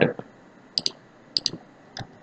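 Computer mouse button clicked twice, each click a quick press-and-release pair, about a second and a second and a half in, with another sharp tap at the very end.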